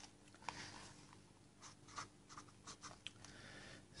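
Felt-tip marker writing on notebook paper: a run of faint, short scratchy strokes as letters and a line are drawn.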